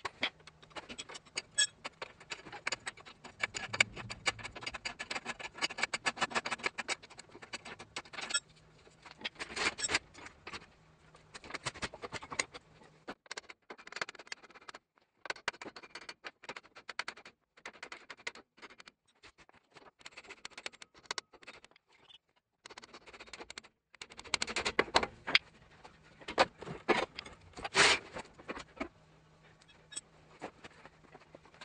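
Repeated sharp metallic knocks and taps with some scraping, from a hammer striking a car's front hub and lower ball joint to separate them. The strikes come thickly at the start and again near the end, with quieter stretches in between.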